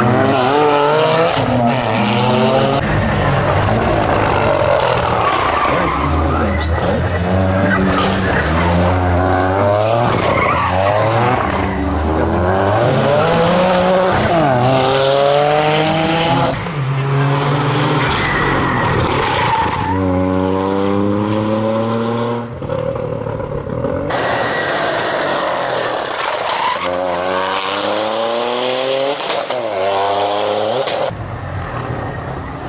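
Toyota GR Yaris rally car's turbocharged three-cylinder engine revving hard under acceleration. It rises in pitch again and again with quick gear changes, in several separate runs.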